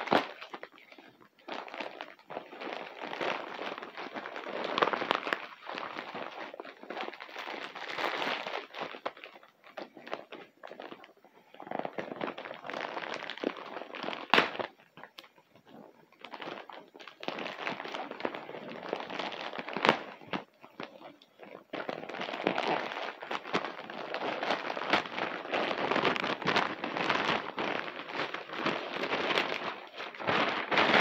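Plastic packaging being torn open and crinkled by hand: irregular bursts of rustling and crackling, broken by short pauses and a few sharp snaps.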